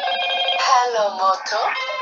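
A loud melody of held electronic-sounding tones, like a phone ringtone, changing pitch from note to note, with a short run of sliding pitches about a second in.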